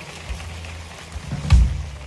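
Live rock band on stage at the close of a song: a low held note hums under faint crowd noise, then a single heavy low thump rings out about one and a half seconds in.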